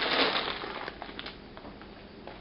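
Plastic bag of dry penne rigate crinkling and rustling as it is handled, with a few short clicks about a second in before it quietens.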